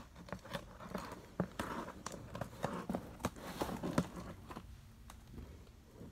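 Small blade cutting the clear packing tape on a cardboard box: a run of irregular scratches and taps on the cardboard, thinning out about four and a half seconds in.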